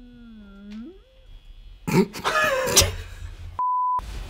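A short hummed vocal sound that dips and then rises in pitch, followed by a spoken word, and near the end a steady electronic bleep lasting under half a second with all other sound cut out under it, as used to censor a word.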